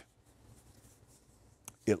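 Near silence: room tone during a pause in a man's speech, with a faint click just before he speaks again near the end.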